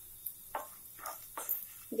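A few soft scrapes of a wooden spatula stirring beetroot fry in a frying pan, about half a second apart.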